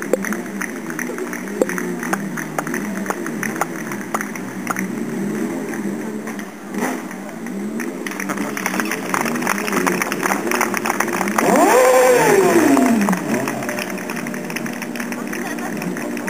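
Sport motorcycle engine during a stunt run. Starting about eleven seconds in it revs up briefly and then falls away over a couple of seconds, the loudest sound here, with a voice talking throughout.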